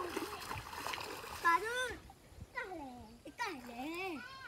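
Water splashing as a small child slaps a muddy river's surface with his hands, through about the first two seconds. After that a young child's voice calls out in drawn-out cries that rise and fall.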